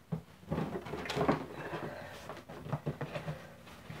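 A cardboard shoebox being handled and its lid lifted open: an irregular run of scrapes, knocks and rustles, loudest a little over a second in.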